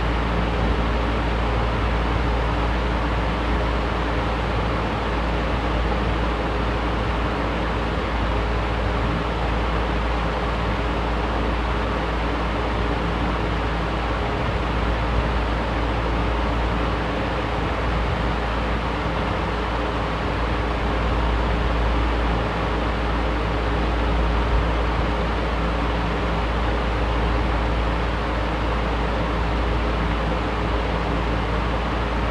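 Box fan running on its low setting: a steady, unchanging rush of air over a deep low rumble, with a faint steady hum.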